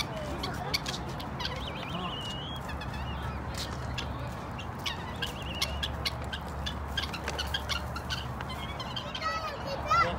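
Helmeted guineafowl calling: a string of short, sharp, irregular calls, with a few brief higher chirps, over a steady low hum.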